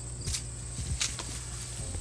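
Footsteps pushing through tall weeds and brush, with two sharp crackles of stems and leaves, about a quarter second and a second in.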